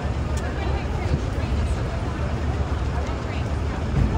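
City street noise: a steady low rumble with the indistinct voices of a crowd talking over it.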